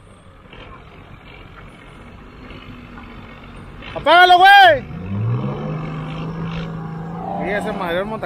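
A vehicle engine in a truck yard runs from about five seconds in, its pitch rising briefly and then holding steady. Just before it, a man gives one short, loud call.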